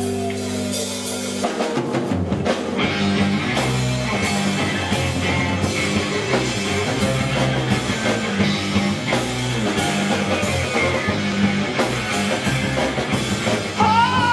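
Live rock band playing loud: a held chord rings for about a second and a half, then drum kit, electric bass and guitar come in together on a steady beat. A voice comes in right at the end.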